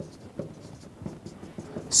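Whiteboard marker writing on a whiteboard: a string of short, scratchy strokes as a word is written.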